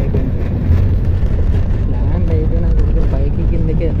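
Airliner cabin noise on the runway after landing: a loud, steady low rumble of the jet engines and the wheels rolling along the runway, heard through the cabin, with faint voices of other passengers.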